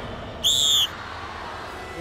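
A single short, high whistle blast, the start signal for the yoke race.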